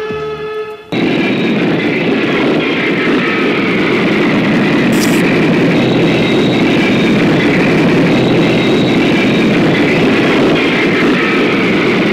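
Jet airliner engines at takeoff thrust: a loud, steady rush that cuts in suddenly about a second in and holds.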